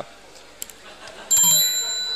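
A small metal bell rung once: a bright, high ringing that starts suddenly about halfway through and carries on, over a low murmur of the room.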